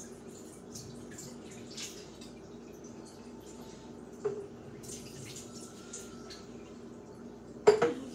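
Small clicks and taps of things being handled at a kitchen counter, with a knock about four seconds in and a louder clatter near the end, over a steady low hum.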